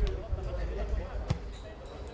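A football kicked once, a sharp thud just over a second in, over a steady low rumble and faint shouts of players on the pitch.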